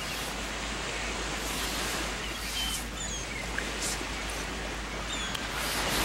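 Beach ambience: a steady wash of ocean surf, with a few short, high bird chirps over it.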